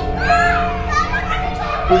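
Young children shouting and calling out in excited, high voices, over background music of long held notes with a steady bass.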